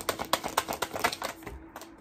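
A deck of tarot cards being shuffled by hand: a quick run of light card clicks, about eight a second, that stops about a second and a half in.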